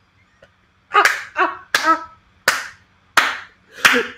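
A man laughing hard in about six short, sharp bursts, starting about a second in.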